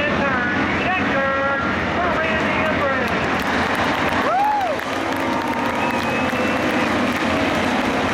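Hobby stock race cars running on a dirt oval, a steady engine noise under the voices of people in the grandstand. A brief rising-then-falling tone about four seconds in.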